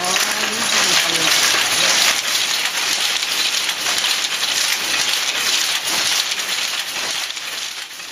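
Taisho-era Toyoda Y-type power looms weaving: a loud, dense, continuous clatter of shuttles being thrown and reeds beating up the weft. The sound fades out near the end.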